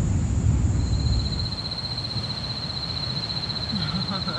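Night outdoor ambience: a low rumble of surf, loudest in the first second, with a steady high-pitched insect call that starts about a second in and holds.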